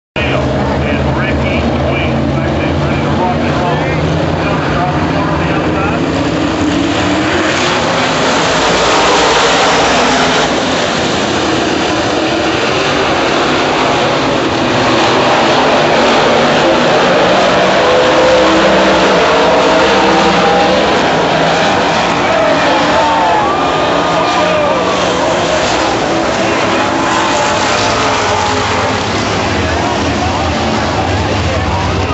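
A field of dirt late model race cars running at race speed. Their V8 engines make a continuous loud noise that swells twice as the pack passes.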